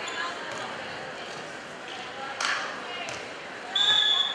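Gym crowd chatter with a couple of thuds of a volleyball bounced on the hardwood floor, then near the end a referee's whistle blast, one steady shrill tone, the signal for the serve.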